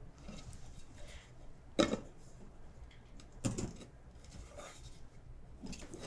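A metal cake pan and serving platter being handled as the pan is turned over, with two brief knocks about a second and a half apart against quiet room tone.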